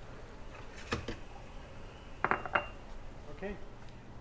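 Ceramic espresso cups being lifted off the espresso machine's drip tray: a single knock about a second in, then a quick cluster of clinks, one ringing briefly.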